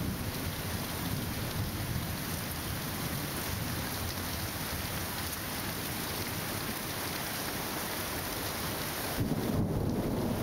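Steady rain with a low rumble of rolling thunder, which swells louder near the end.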